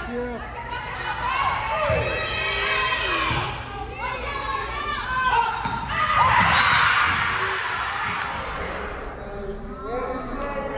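Volleyball rally in an echoing gym: players' shouts and calls, with the ball thudding off hands and floor a few times in the first half. About six seconds in, a louder swell of cheering and shouting rises and fades over the next two seconds.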